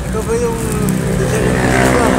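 A motor vehicle engine running close by, a steady hum whose pitch rises a little near the end, with a voice faintly over it.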